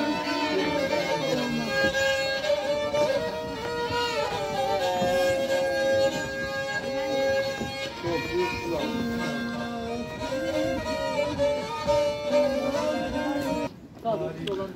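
Black Sea kemençe, a small three-string bowed folk fiddle, playing a Black Sea folk tune: held notes sounding together, with quick ornaments. The music cuts off just before the end.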